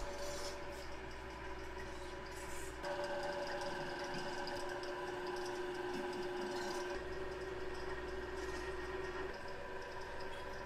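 Clay pug mill extruder running: a steady motor hum with a few constant tones, its low end shifting slightly a couple of times.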